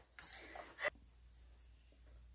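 A person's short, breathy laughter that cuts off abruptly just under a second in, followed by near silence.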